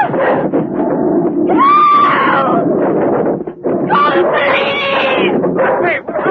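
High wailing screams, two long drawn-out cries, over a dense, noisy din.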